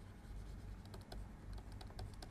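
Faint, irregular clicks and taps of a stylus on a pen tablet as a word is handwritten, over a low steady hum.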